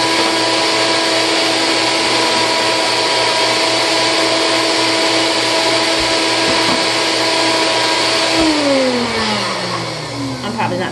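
NutriBullet blender motor running with a steady whine, then switched off about eight and a half seconds in, its pitch falling as it spins down. The half-frozen bananas and blueberries are not blending through, which she puts down to not letting the bananas thaw enough.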